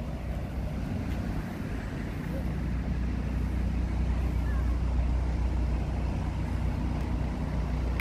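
Street traffic: a steady low engine rumble from vehicles on the road, swelling slightly toward the middle.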